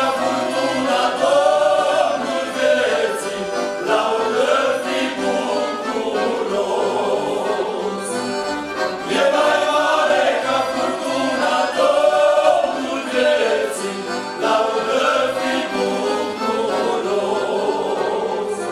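Male vocal ensemble singing a Christian hymn in several parts, accompanied by accordions.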